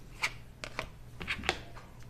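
A handful of short taps and rustles as an acrylic quilting ruler is laid and shifted on rayon fabric over a cutting mat. The loudest tap comes about one and a half seconds in.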